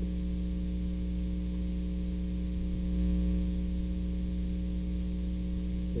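Steady electrical mains hum with a low buzz of evenly spaced tones and a background hiss.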